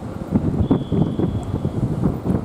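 Wind buffeting the camera microphone, a rough, uneven low rumble.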